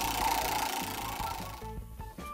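Top disc of a tabletop spinner game whirring as it turns, the sound fading as it slows, with background music underneath.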